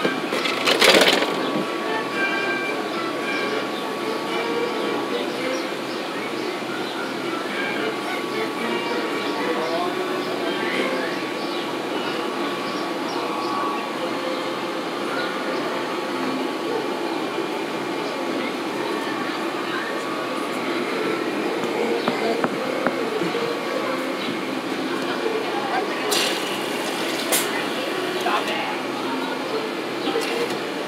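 Steady background hubbub of a busy cafe: many people talking indistinctly, with faint music playing. A few brief clicks near the end.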